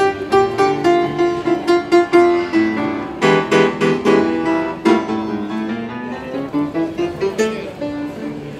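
Acoustic grand piano played live: a melody over chords, with a run of strongly struck chords a few seconds in.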